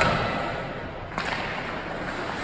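Ice hockey sticks and puck cracking sharply against each other and the ice at a faceoff: the echo of a loud crack fades at the start, and a second crack comes about a second in, both ringing in the arena.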